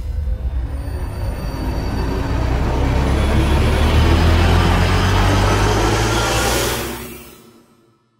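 Outro sound effect: a deep bass rumble under a rush of noise that swells and rises in pitch, then fades out quickly about seven seconds in.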